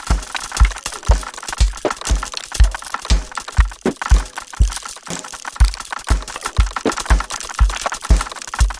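Experimental electronic music with a steady low beat, about two thumps a second, under a dense layer of crackling, glitchy clicks and noise.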